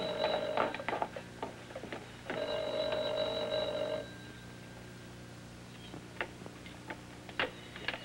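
A telephone bell ringing twice. Each ring lasts about two seconds with a rapid rattle, and the first is already sounding at the start. A few faint clicks follow.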